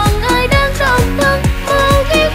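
Upbeat Vietnamese pop dance track with a steady kick-drum beat under a bright, gliding melody line.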